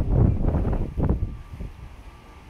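Wind buffeting the phone's microphone: irregular low rumbling gusts, strongest at the start and again about a second in, dying down near the end.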